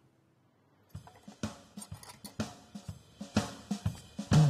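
Background music: after about a second of near silence, a quick drum-kit beat with hi-hat and snare starts up.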